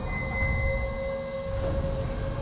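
Low rumbling drone with a steady held tone over it that enters just after the start, a dark sustained bed typical of trailer sound design.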